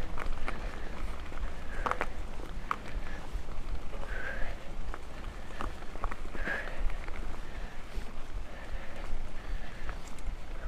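Mountain bike rolling fast over a dry, stony forest dirt trail: tyre noise with a steady low rumble of wind on the microphone, and scattered sharp clicks and rattles from stones and the bike. The rider breathes heavily about every two seconds.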